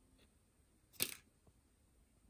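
One short, sharp click about a second in, against a quiet background.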